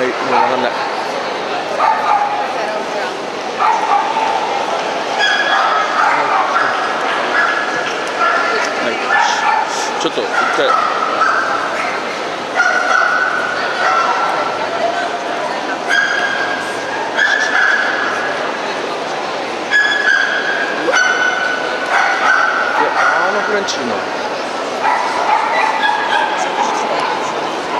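Dogs yapping and whining again and again, each cry a short held high note, over a constant hubbub of crowd chatter in a large hall.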